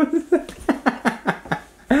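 A woman laughing hard in quick bursts, about four or five a second, with a mouthful of smoothie she is struggling to hold in.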